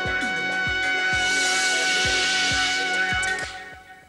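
The end of a TV theme tune: a held final chord over a beat of low drum hits, with a cymbal wash, fading out near the end.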